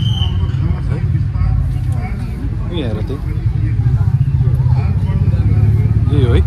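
Background chatter of several people's voices, none close, over a steady low rumble.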